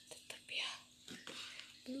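A person whispering softly, with a few faint clicks and a faint steady hum under it in the first half.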